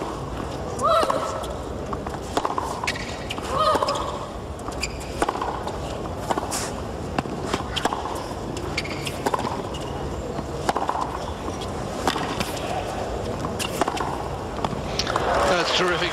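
Tennis rally on a hard court: a string of sharp knocks from racket strikes and ball bounces, with a short grunt of effort on a shot about a second in and another near four seconds. Crowd noise rises near the end as the point finishes.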